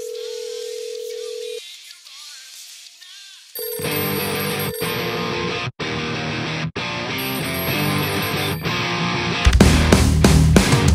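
Telephone ringback tone on a line: a steady tone held for about two seconds, then silent, then sounding again about three and a half seconds in. A rock track comes in under the second ring, and near the end the full band with drums comes in much louder.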